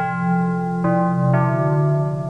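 Slow music: sustained keyboard notes that step to a new pitch about every half second.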